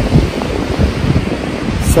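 Wind buffeting the camera microphone in uneven gusts, over the rush of ocean surf.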